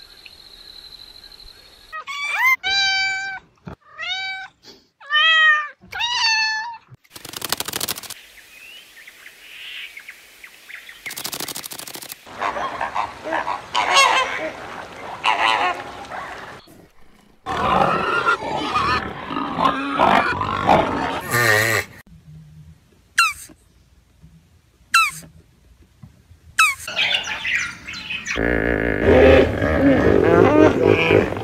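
A string of different animal calls, one short clip after another. A handful of high, arching calls come a few seconds in, flamingos honk around the middle, brief chirps follow, and loud low hippo calls come near the end.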